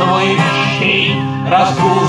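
Acoustic guitar strummed in a steady accompaniment under a man's singing voice, in a bard-style song.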